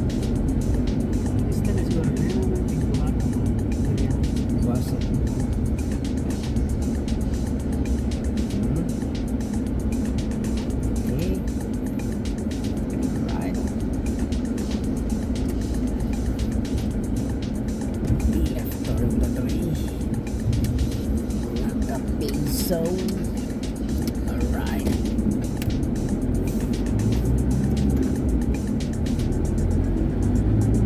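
Steady low rumble of a vehicle's engine and tyres, heard from inside the cabin while driving along a road, with background music playing over it.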